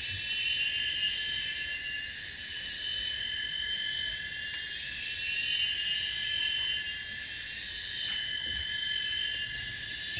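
Steady, high-pitched insect chorus of several shrill tones, held without a break.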